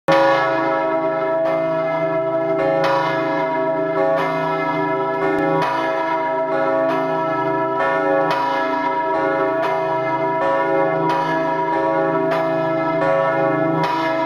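Church bells pealing: repeated strikes roughly every half to three-quarters of a second over a dense, sustained ringing of overlapping bell tones.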